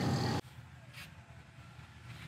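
The tail of a man's spoken word, cut off abruptly, then faint low background noise with a soft click about a second in.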